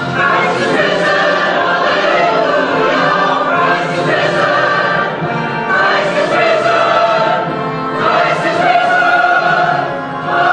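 Mixed church choir of men and women singing in harmony, in long held phrases with brief dips between phrases about five and eight seconds in.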